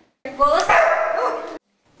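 A dog giving one drawn-out vocal call, about a second and a half long, that starts and stops abruptly.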